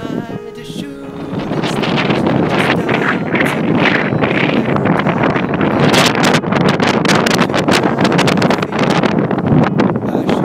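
Strong wind buffeting the microphone, a loud steady noise with gusty crackles that sets in about a second and a half in, just as a short sung phrase ends.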